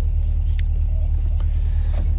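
Steady low rumble of a school bus's engine and road noise heard from inside the cabin.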